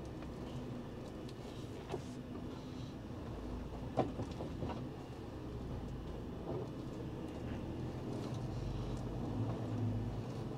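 Iveco articulated truck heard from inside its cab, moving slowly: a steady low engine rumble with a few short sharp clicks or knocks, the clearest about two and four seconds in.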